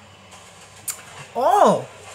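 A man's drawn-out 'ooh' of reaction, rising then falling in pitch, about one and a half seconds in. It is preceded by a short click just under a second in.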